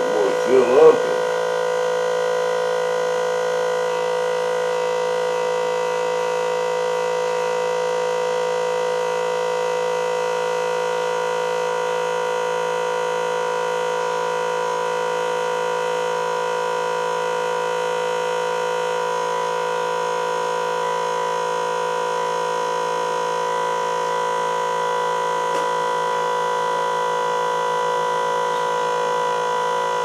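Small electric fuel pump running with a steady, even hum as it pumps fuel into the model jet's tanks.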